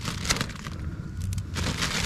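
Plastic fish bag crinkling and crackling in the hands as its knotted top is handled, in scattered short crackles that thicken into a denser rustle near the end.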